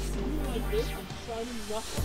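Air hissing at a car tyre being filled through a hose from a portable compressor, loudest in a brief swell just under a second in.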